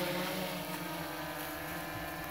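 DJI Inspire 1 quadcopter drone hovering, its rotors giving a steady buzz made of several tones at once.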